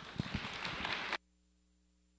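Applause from a small audience and panel, dense clapping that cuts off abruptly about a second in, leaving only a faint hum.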